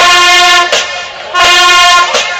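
Marching band's brass section, sousaphones and horns, blasting loud held notes in unison: two long blasts of under a second each, about a second and a half apart.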